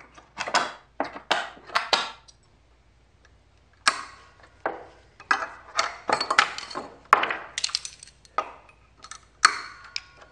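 Sharp metallic clanks and knocks from a claw hammer and locking pliers (Vise-Grip) being handled and worked against pallet wood and nails. A few clanks come at first, then a short pause, then a quick run of clanks from about four seconds in.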